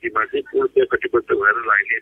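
A man speaking Nepali over a telephone line, the voice thin and narrow as phone audio sounds.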